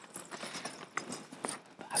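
Irregular light taps and clicks, a few a second.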